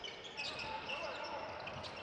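Live basketball game sound on an indoor court: a low crowd murmur with the ball being dribbled and a few short sneaker squeaks on the hardwood floor.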